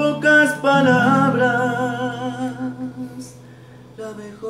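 A man singing a long, wavering held note over a ringing acoustic guitar chord, the sound dying away near the end.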